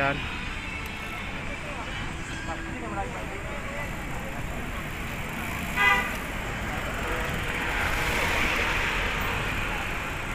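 Busy street ambience: steady road traffic noise with faint voices in the background, a brief louder pitched sound about six seconds in, and the traffic swelling toward the end.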